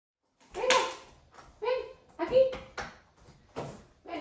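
A toddler's voice making about five short, high-pitched babbling sounds.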